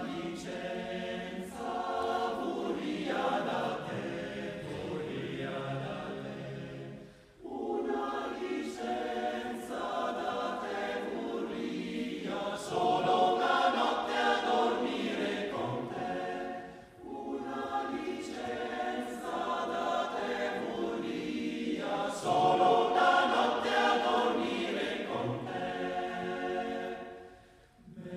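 Male choir singing unaccompanied in several-part harmony, a folk song arrangement sung in long phrases, with short breaks between phrases about seven and seventeen seconds in.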